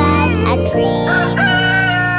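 A rooster crowing cock-a-doodle-doo over a children's song backing, ending in a long held note that slowly falls.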